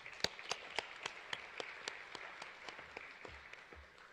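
Audience applauding, with one clapper standing out in an even beat of about four claps a second. The applause fades away near the end.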